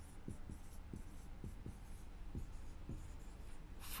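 Marker pen writing on a whiteboard: a faint run of short, irregular strokes and taps over a low room hum.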